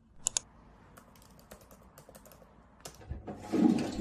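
Clicks on a laptop keyboard and trackpad: two sharp clicks just after the start, then a scatter of light key taps. Near the end a louder rushing noise builds.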